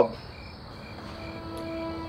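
Night ambience of crickets chirping, with soft sustained background-music notes coming in about a second in and slowly growing louder.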